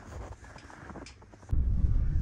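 A faint, quiet stretch, then about one and a half seconds in, a sudden steady low rumble of a vehicle driving on a snowy road, heard from inside the cab.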